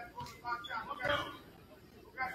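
Faint, scattered voices and chatter in a basketball gym, quieter in the second half.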